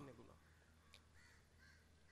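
Faint bird calls in a quick series, a short call about every half second from about a second in, over a low steady hum.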